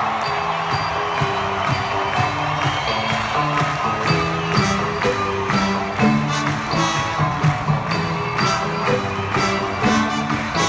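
Live hip-hop concert music played over an arena's PA, heard from the crowd, with bass notes held under it and a beat of sharp hits that becomes steadier about four seconds in. Crowd noise is mixed in.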